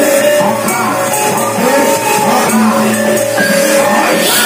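Amplified live music for a gedrok buto masked dance: a singing voice over held instrument tones, with percussion strikes running through.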